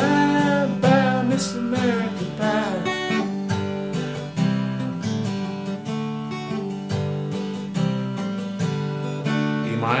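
Steel-string acoustic guitar strummed in a steady rhythm, the chords changing every second or so. A man's voice sings over the strumming for the first few seconds.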